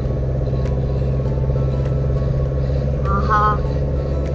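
Car driving along a road, heard from inside the cabin: a steady low engine and road drone. A brief high voice comes in about three seconds in.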